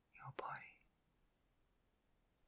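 A brief, soft whispered breath from a woman's voice, about half a second long near the start, with a small click in the middle; the rest is near silence.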